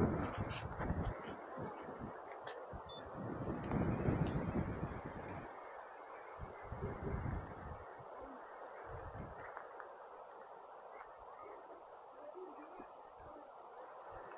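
Faint outdoor ambience with irregular gusts of wind rumbling on the microphone, strongest a few seconds in and dying down later.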